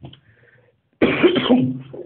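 A man coughs, a loud burst about a second in lasting about a second.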